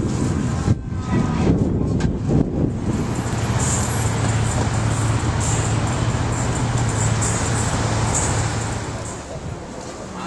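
Street traffic: a motor vehicle's engine running close by as a steady low hum for several seconds, fading near the end, with irregular voices and street noise in the first few seconds.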